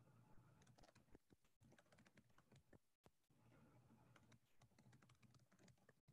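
Faint typing on a computer keyboard: irregular runs of soft key clicks over a low steady electrical hum, with the audio cutting out for an instant about halfway through.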